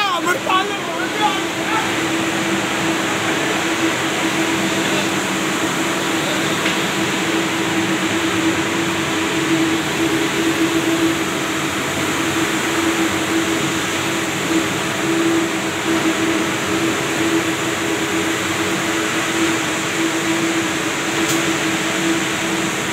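Steady running noise of textile spinning-mill machinery, long spinning frames with rows of spindles, heard as an even hiss with a constant hum tone under it.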